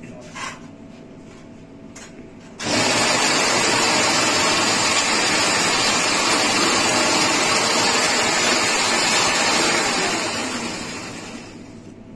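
Toroidal coil winding machine running: its shuttle ring starts suddenly about two and a half seconds in, runs loud and steady for about seven seconds, then slows and fades out over the last two seconds.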